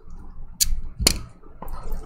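Gloved hands handling a sealed cardboard trading-card box: two sharp taps about half a second apart in the middle, the second with a low thump, then a faint click.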